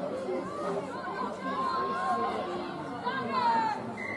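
Many voices of rugby players and onlookers shouting and calling over one another in the open air as a pile of players goes over the try line. Some of the calls are drawn out.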